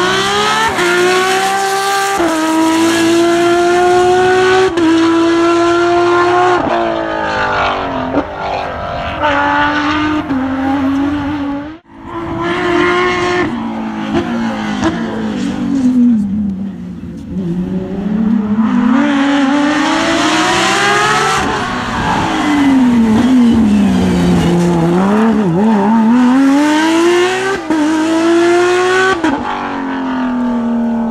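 Rally car flat-six engine at full racing revs passing on a tarmac stage, its pitch climbing, stepping through gear changes, dropping under braking and rising again as it accelerates away. The sound cuts out sharply for a moment about twelve seconds in, then another hard-driven pass follows.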